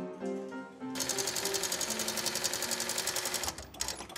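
Background music, then from about a second in a sewing machine stitching leather in a fast, steady run, which stops shortly before the end.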